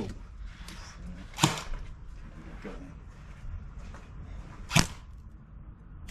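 Two sharp cracks of an airsoft gun firing, one about a second and a half in and the other about three seconds later.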